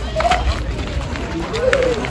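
Voices of people talking and calling, with the background chatter of other visitors.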